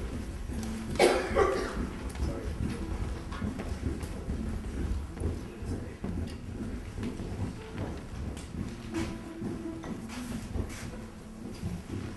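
Concert hall between pieces: a low rumble of audience and players settling, with scattered small noises and a sharp sound about a second in. Stray brief instrument tones are heard, including a short held note near the end.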